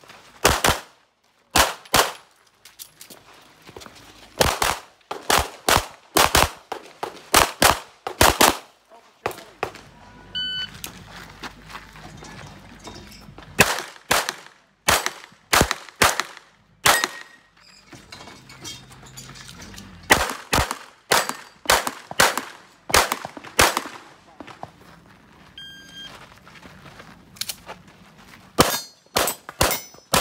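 A CZ 9 mm pistol firing fast pairs and short strings of shots during an action-shooting stage, with short pauses as the shooter moves between positions. Steel targets ring when hit, about ten seconds in and again near 26 s.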